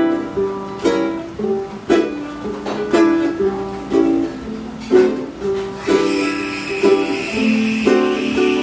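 Two ukuleles playing an instrumental introduction together: a strummed chord about once a second under plucked melody notes.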